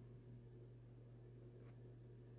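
Near silence: a steady low hum and faint hiss, with one faint tick near the end.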